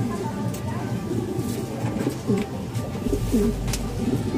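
Several domestic pigeons cooing in the loft's wire breeding cages, short low overlapping coos one after another, with a few light clicks. A steady low hum comes in near the end.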